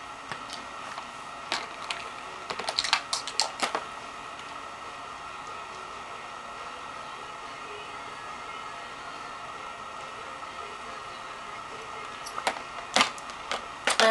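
Light clicks and taps of objects being handled close to the microphone, in one cluster a couple of seconds in and another near the end, over a steady faint hum.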